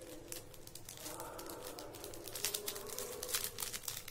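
Crinkly packaging being handled and rustled by hand: a run of quiet, short crinkles that grow busier over the second half.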